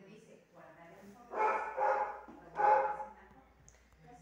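A dog barking three times in quick succession.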